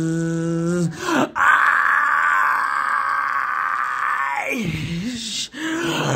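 A man's unaccompanied singing voice, in a nu metal style. He holds a sung note for about a second, then lets out a harsh, raspy scream for about three seconds that falls in pitch at the end, and is singing again just before the end.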